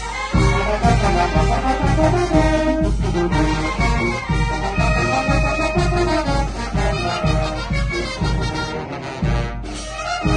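A youth wind band plays a piece together, with flutes, clarinets and saxophones over trumpets and sousaphones, and a steady beat in the low brass. The music breaks off briefly near the end and starts again.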